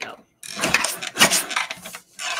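A sliding-blade paper trimmer cutting a thin strip off a cardstock panel: a rough, scraping rasp as the blade carriage is pushed along the rail, starting about half a second in and lasting about a second and a half.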